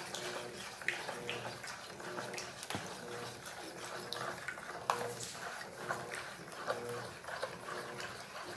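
Plastic spoon stirring a liquid soap mixture of oil, detergent and lye solution in a plastic bowl, with scattered light clicks of the spoon against the bowl. A faint short hum repeats about once a second.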